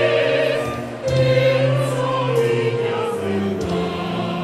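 Mixed choir singing in harmony over a string section of cello and violin, in held, sustained notes. A new phrase starts about a second in, and the bass moves to a new note near the end.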